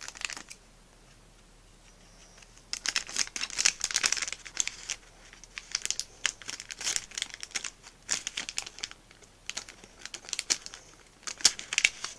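A blind-bag packet crinkling in bursts as it is handled and opened by hand, with sounds of the packet tearing. The first couple of seconds are nearly quiet, then the crinkling comes in repeated clusters.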